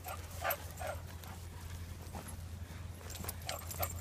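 Dogs playing in grass, with a few short dog yips or whimpers in the first second over a steady low rumble.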